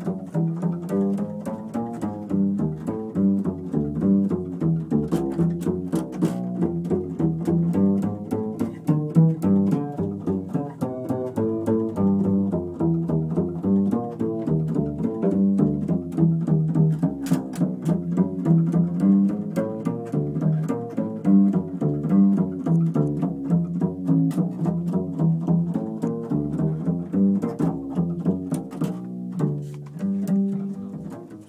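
A jazz band playing, with a plucked double bass line carrying the sound and short percussive clicks over it. The music sits mostly low, with little treble.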